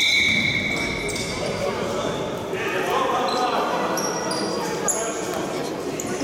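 Referee's whistle blown in a large gym: one long steady blast at the start that fades over about two seconds. It is followed by basketball game noise: a ball bouncing, short high squeaks and players' voices echoing in the hall.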